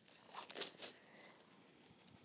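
Faint, brief rustling of gloves being pulled off the hands, a few soft crinkles in the first second.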